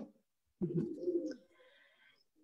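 A pigeon cooing: one low hooting call, under a second long.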